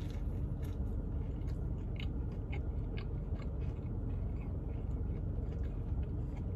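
A person biting into a soft Spam and egg biscuit and chewing it, with faint, irregular wet clicks of chewing.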